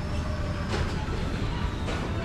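Wheels of a pushed trolley rolling over a hard supermarket floor: a steady low rumble with a couple of short rattles.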